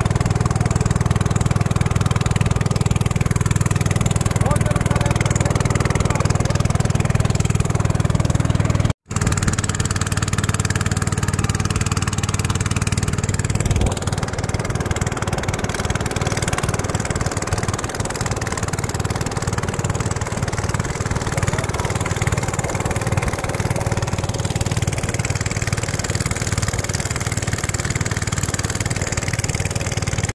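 The motor of a long wooden river boat running steadily under way, a constant drone mixed with water and wind noise. It breaks off for a moment about nine seconds in, then runs on slightly quieter from about fourteen seconds.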